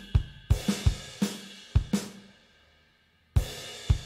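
Playback of a multitrack virtual drum kit: kick, snare, hi-hats, toms and ride, with the crash cymbal track being faded up into the mix. The beat stops briefly near three seconds in and comes back in with a crash.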